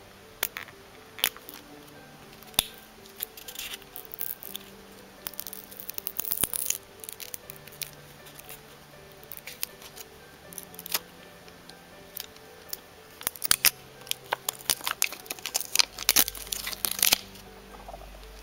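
Fingernail picking and scratching at the end of a roll of washi tape and peeling it loose: irregular sharp clicks and short tearing rasps, bunching up near the end. Soft background music plays underneath.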